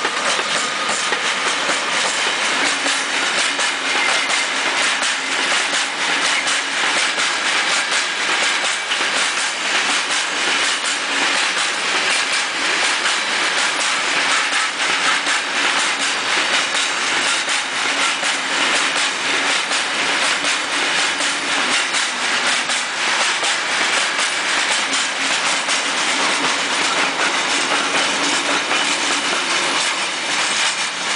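Freight train of covered hopper wagons rolling past close by, with a steady clickety-clack of wheels over rail joints throughout.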